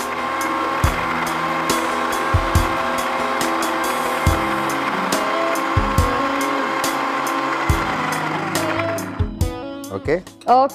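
Electric mixer grinder (Indian mixie) running steadily, grinding a wet mixture in its steel jar, then winding down with a falling pitch near the end.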